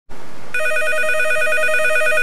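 Electronic telephone ringer trilling, a rapid two-tone warble that starts about half a second in after a brief hiss.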